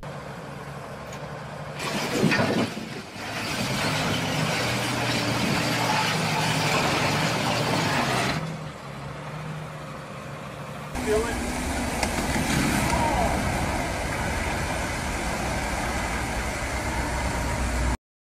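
Diesel engine of a tracked logging skidder running as it winches a load of logs off a timber truck, with a loud clatter about two seconds in.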